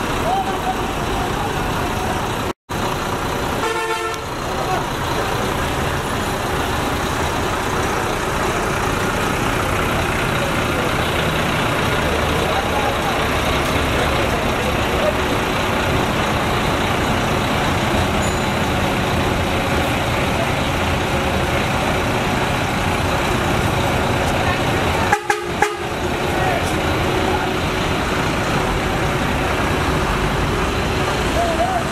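Steady roadside traffic and engine noise, with a vehicle horn honking briefly about four seconds in. The sound drops out for an instant twice.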